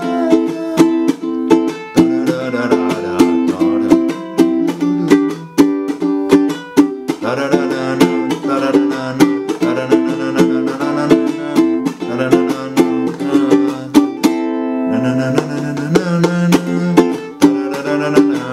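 Acoustic ukulele strummed in a steady, repeating rhythm, moving between A minor and G chords. Sharp muted strokes (chucks) mark the beat between the ringing strums.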